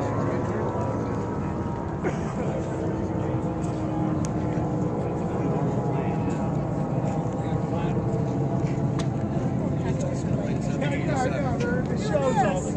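Steady rumble of a FedEx cargo jet's engines as it climbs away after a low flyby, with background voices.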